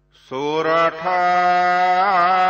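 Sikh Gurbani chant beginning: a single voice starts about a third of a second in, slides up in pitch, breaks briefly, then holds one long drawn-out note with a slight waver.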